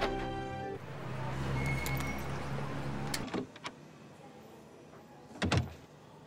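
TV drama soundtrack: a music cue ends about a second in and gives way to a swelling rush of noise that cuts off suddenly around three seconds in. A few clicks follow, then a single loud thump near the end.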